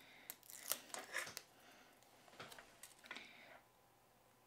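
Faint clicks and rustles of hands handling a small paper die-cut and foam tape, with a few short ticks early and soft rustling later as the piece is pressed onto a card.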